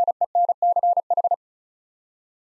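Morse code sent as a single steady beeping tone keyed in short dots and longer dashes at 35 words per minute, spelling out the word WRENCH. The keying stops a little over a second in.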